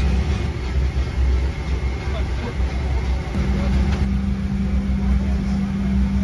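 Airliner cabin background noise on the ground before takeoff: a steady low rumble, with a steady hum coming in about halfway through.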